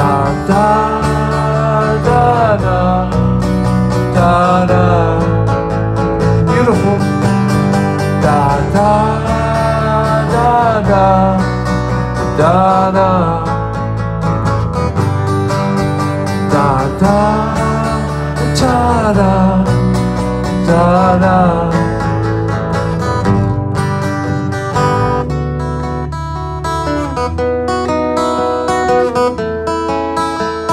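Instrumental break in a live song: a strummed acoustic guitar and an electric bass, under a lead melody that slides up and down in pitch. Near the end the sliding lead drops out, leaving the strummed chords and bass.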